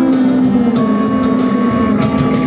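Backing music for a rap performance, with a steady beat under held tones, playing between vocal lines.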